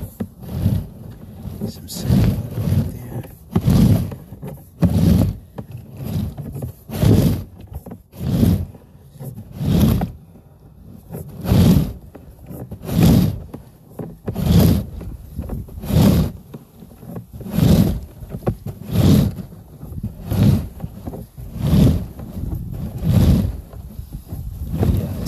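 Sewer inspection camera push rod being fed into the drain line by hand in strokes, a rhythmic rasping push about once every one and a half seconds as the camera head advances along the pipe.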